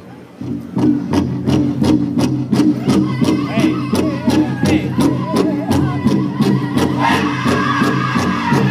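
Powwow drum group starting a song about half a second in: a large drum struck in a steady even beat by several drummers, with the group singing together over it.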